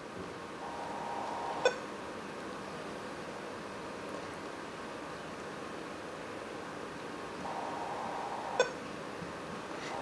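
Motorola MBP38S-2 baby monitor parent unit giving two short beeps, about seven seconds apart, as its pan arrow button is pressed. A faint hum lasts about a second before each beep, over a low hiss.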